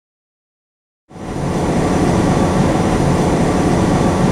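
Silence, then about a second in a steady, loud vehicle rumble starts abruptly, a motor vehicle's engine running with outdoor noise.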